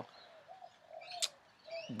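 A few faint, low bird calls, with a short click about a second in.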